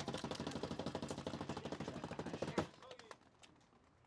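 A drum roll of rapid hand slaps on a plastic folding table, stopping abruptly about two and a half seconds in.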